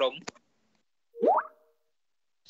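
A single click, then silence broken about a second and a quarter in by one short, rising electronic bloop with a steady tone beneath it: a computer notification sound.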